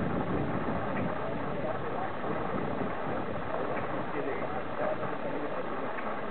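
Indistinct voices of people talking in the background, none clear enough to make out, over a steady rush of outdoor noise.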